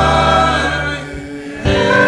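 A man singing a slow gospel song into a microphone. He holds a long note, pauses briefly, and starts a new phrase with a wavering vibrato near the end, over a sustained low accompaniment.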